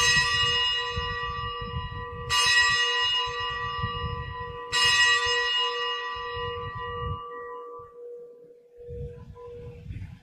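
Consecration bell struck three times, about two and a half seconds apart, each stroke ringing on and fading slowly: the bell rung at the elevation of the chalice during Mass.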